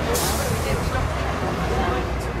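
Steady low rumble of an open-top double-decker bus's engine, heard from the upper deck, with passengers' voices over it. A brief hiss comes just after the start.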